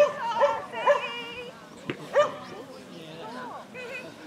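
A dog barking: three quick, high-pitched barks in the first second, then another about two seconds in.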